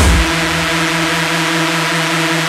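Industrial hardcore music in a breakdown. The kick drum stops just after the start, leaving a steady, distorted synth tone held over a hiss, with no beat.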